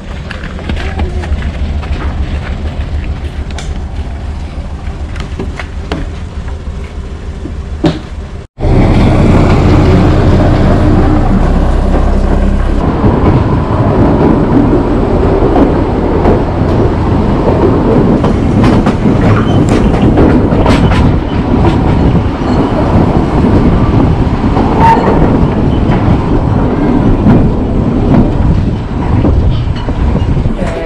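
Narrow-gauge passenger train running along the track, heard from an open carriage window: a loud, steady rumble and clatter of wheels on rails that starts abruptly about eight seconds in. Before that there is a quieter low rumble.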